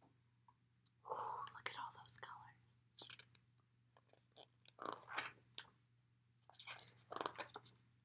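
Pages of a large picture book being opened, turned and handled: soft paper rustles and riffles in several short bursts.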